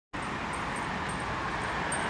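Steady outdoor street noise with a traffic hum, an even wash of sound at a constant level.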